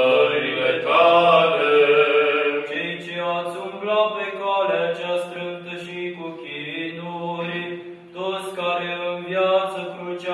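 Unaccompanied Romanian Orthodox liturgical chant of a memorial service (parastas), sung in long held notes that step from pitch to pitch, with a brief dip about eight seconds in.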